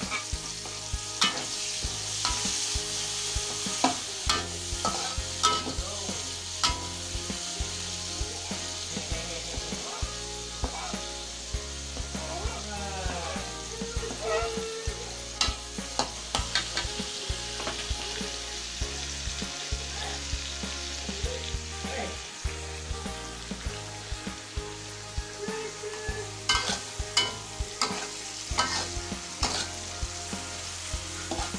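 Onions and red chillies frying in a metal wok, with a steady sizzle. A metal spatula stirs and scrapes against the pan, making frequent sharp clicks that come thickest near the end.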